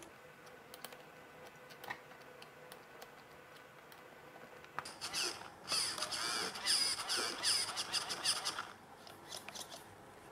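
RC car servos whining in several short bursts, the pitch gliding up and down, as the steering and throttle servos are worked from the radio transmitter during setup. Before that, a few faint clicks from handling the throttle linkage.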